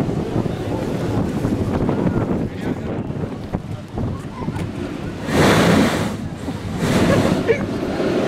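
Strong wind rushing over the microphone, with rough surf breaking on the rocky shore below. Two louder surges of rushing noise come about five and a half and seven seconds in.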